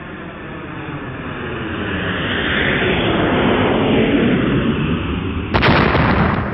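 Cinematic logo-reveal sound effect: a rumbling whoosh that swells steadily louder for about five seconds, then a sudden boom-like hit near the end, the loudest moment, as the logo lands.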